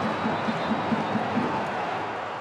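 Large football-stadium crowd making a steady, dense wall of noise.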